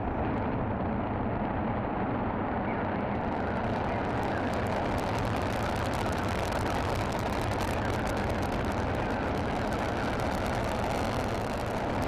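Proton rocket engines firing through liftoff and climb-out: a steady, dense rush of noise that grows brighter about three seconds in.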